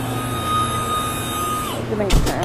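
Steady low hum of an ambulance's patient compartment, with a single held high electronic tone over it for about a second and a half that slides down as it ends.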